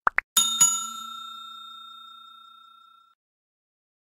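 Subscribe-button sound effect: two quick mouse clicks, then a bright bell ding struck twice that rings out and fades away over about three seconds.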